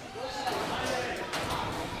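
Voices shouting across a football pitch during play, with a couple of sharp knocks about one and a half seconds in.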